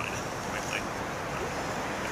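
Steady outdoor background noise, a low rumble, with a couple of brief faint high-pitched sounds near the start and a little under a second in.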